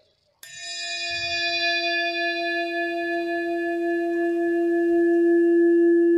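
A bell-like chime struck once about half a second in. Its low tone rings on steadily and swells slightly, while the higher overtones fade away.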